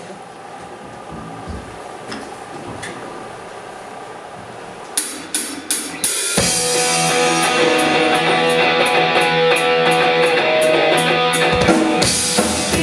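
A rock band playing live: a few quiet seconds of lingering instrument sound, then a few sharp drum hits about five seconds in, and the full band comes in just after six seconds, with drum kit, steady cymbal strokes and electric guitars.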